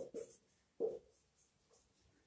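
Marker pen writing on a whiteboard: faint short strokes, the clearest two just after the start and just under a second in.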